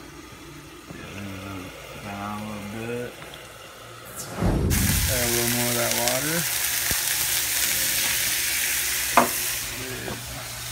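Sausage patties frying in a pan. About four and a half seconds in, water poured into the hot pan sets off a sudden loud, steady sizzle. There is a sharp click near the end.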